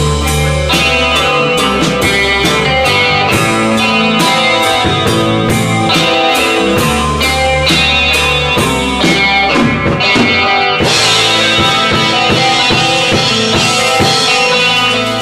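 Live rock band playing an instrumental passage of its own song: electric guitar and drum kit over sustained low notes, with a steady beat of about three strikes a second. The cymbals open up about eleven seconds in.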